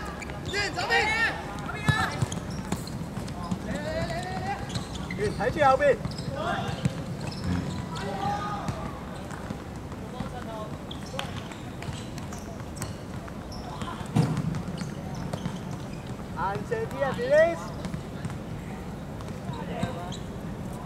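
Footballers shouting calls to each other during play, with thuds of the ball being kicked and bouncing on a hard court. The loudest shouts come about six seconds in and again near the end.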